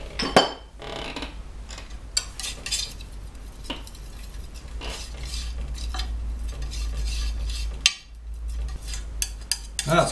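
A brush or palette knife mixing oil paint on a glass palette, with repeated clicks, taps and scrapes against the glass and one sharper knock about half a second in.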